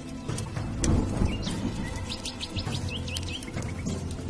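Background music with a bird chirping a quick run of short rising notes through the middle, and scattered light clicks.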